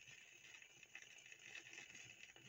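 Near silence: faint surface hiss with small scattered crackles from a vinyl 45 rpm single turning under the stylus, with no music left on it.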